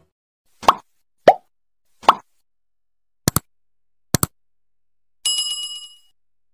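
Subscribe-button animation sound effects: three short pops, then two quick double clicks, then a bell ding about five seconds in that rings on and fades.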